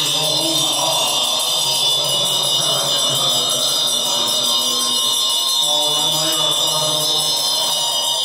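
Buddhist mantra chanting by voices, carried over a steady, high ringing drone.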